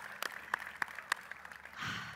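A few people clapping their hands, sharp separate claps about three a second that thin out and stop a little past halfway.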